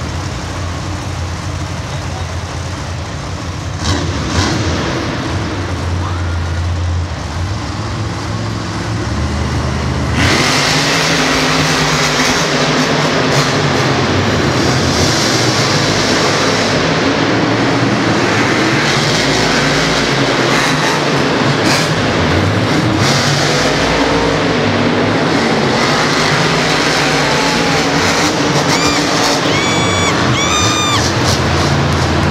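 Monster truck engines running low at the start line, then about ten seconds in opening to full throttle and staying loud as the trucks race around the dirt track.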